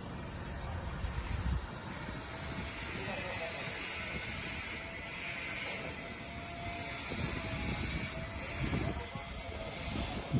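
Outdoor building-site ambience: a steady rushing noise with low rumble, and faint, indistinct voices now and then.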